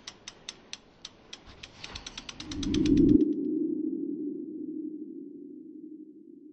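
Animated logo-reveal sound effect: a run of sharp ticks, about four a second, that speed up while a whoosh swells to a peak about three seconds in, where the ticks stop. A low hum then carries on and slowly fades.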